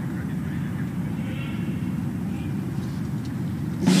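Steady low outdoor background rumble with no distinct events, the open-air ambience of a large paved square.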